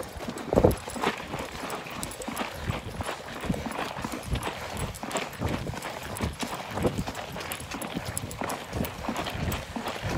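Running footsteps on asphalt, about two or three footfalls a second, with rustling from a phone jostled in a running hand.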